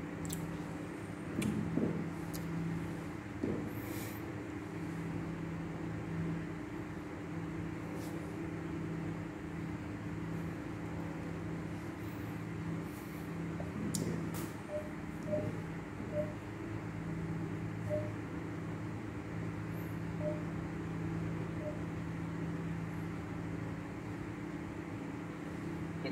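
Steady low mechanical hum with a few faint clicks and knocks, the loudest about two seconds in and again about fourteen seconds in.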